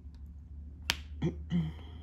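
A single sharp click about a second in, from diamond-painting work with a drill pen setting resin drills on the canvas, over a steady low hum.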